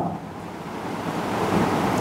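Steady background hiss with no clear pitch, growing gradually louder.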